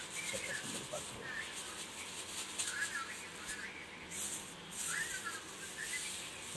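Thin plastic bag crinkling and rustling as it is untied and pulled open by hand. Short high chirps sound now and then behind it.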